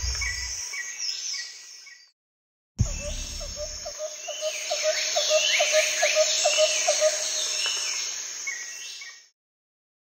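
Birds chirping over a pulsing call repeated about three times a second, opening with a deep low thump; the sound fades out about two seconds in, starts again with another thump, and cuts off suddenly near the end.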